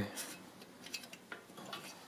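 A few faint metallic clicks and taps from a hand handling a scooter's front fender and its welded-on stainless trim.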